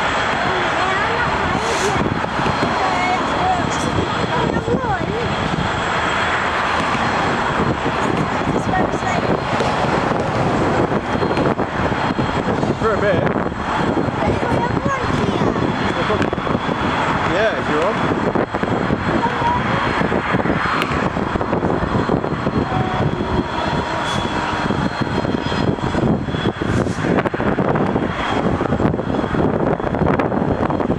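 Class 66 diesel freight locomotive running: a steady, loud drone from its two-stroke EMD diesel engine.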